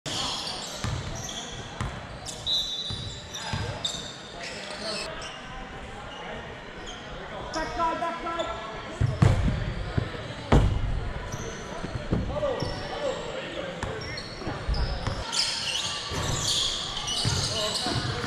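Indoor soccer play on artificial turf, with players calling out across the pitch. A little past the middle come two sharp, loud ball strikes about a second and a half apart: a shot at goal.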